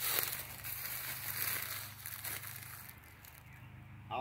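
Crunching and rustling in dry leaf litter and gravel underfoot, loudest over the first two seconds or so and then dying away.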